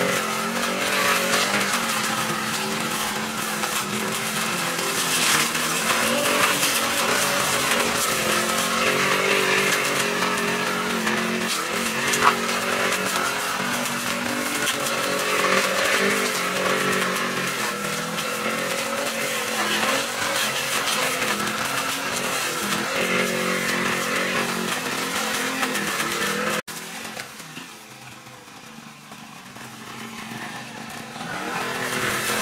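Petrol brush cutter engine running under load as it trims grass, its speed rising and falling as the cutting head swings through the weeds. There is one sharp knock partway through. Near the end the engine sound cuts off abruptly and the level drops sharply.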